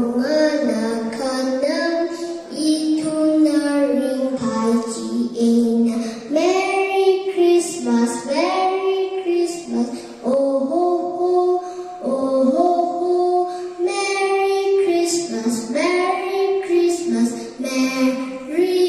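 A young girl singing a song solo into a microphone, in phrases of held notes with short breaths between them.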